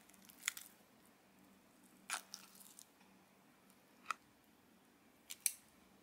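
Metal lever ice cream scoop working through thick Greek yogurt in a plastic tub: a few faint, separate scrapes and clicks, the last two close together near the end.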